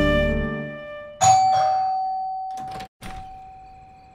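A doorbell chime rings twice, about a second in and again near three seconds in, each tone ringing on and fading away.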